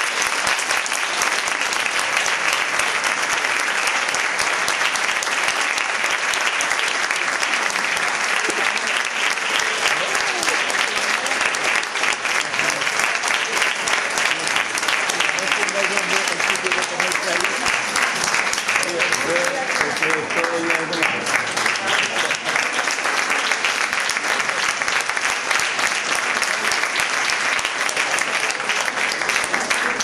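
Sustained applause from a concert audience, dense and steady throughout, following the end of an orchestral piece.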